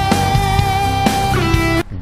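Live rock band with a lead electric guitar holding long sustained notes over drums and bass. One note bends upward near the end, and the music then cuts off abruptly.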